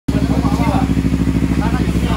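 Kawasaki Z300 parallel-twin motorcycle engine running at a steady idle with an even, fast pulse, loud and close.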